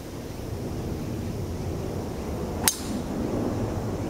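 A golf club striking a golf ball in a full swing: one crisp, sharp impact about two and a half seconds in.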